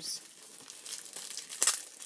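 Clear plastic packaging crinkling as it is handled and pulled open to get embossing folders out, with one sharper, louder crackle about one and a half seconds in.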